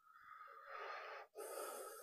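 A man breathing audibly into a close-up microphone: two faint, long breaths, one after the other.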